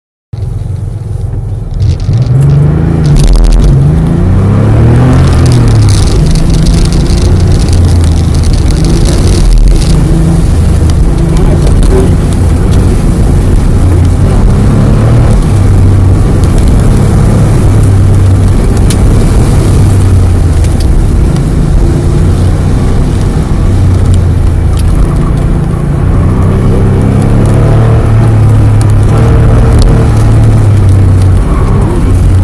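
Car engine heard from inside the cabin, launching hard about two seconds in, then revving up and down continually as the car is driven flat out through a tight cone course.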